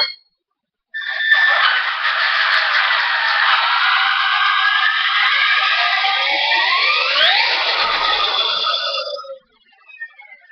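Brushless motor and drivetrain of a Traxxas E-Maxx RC monster truck (Mamba Monster system on two 3-cell lipos) whining under throttle. It starts abruptly about a second in, its pitch glides sharply upward about seven seconds in, and near the end it cuts off into a faint falling whine.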